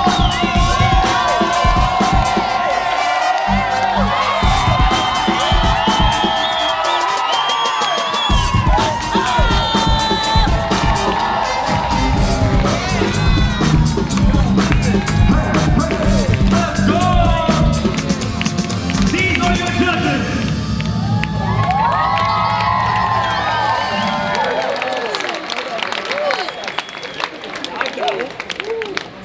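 A crowd cheering, whooping and shouting over loud breakbeat dance music with a steady beat and heavy bass. The bass drops out about 24 seconds in, and the noise thins near the end.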